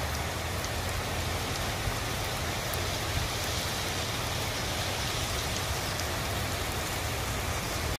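Heavy rain falling steadily on a street, a constant even hiss of a downpour.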